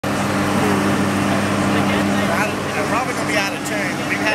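A steady low machine hum, one or two constant tones, with people talking from about halfway through.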